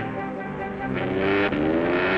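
Cartoon orchestral score with several instruments holding notes. About a second in it swells, and in the second half it glides upward in pitch.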